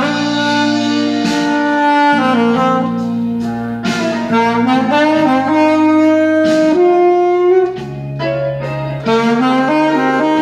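Alto saxophone playing a blues solo in long held notes over a backing track, with a short softer stretch about eight seconds in.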